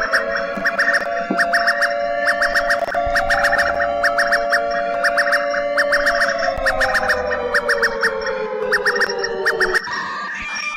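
Emergency alert alarm tone, the South African entry in an alarm compilation. Clusters of fast, high beeps sound over a held lower tone that slowly slides down in its last few seconds, and it cuts off just before the end.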